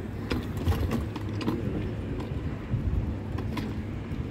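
Town-centre street noise: a steady low rumble, like traffic, with scattered irregular clicks and taps.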